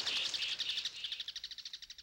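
A bird's rapid high trill of chirps, fading away over about two seconds.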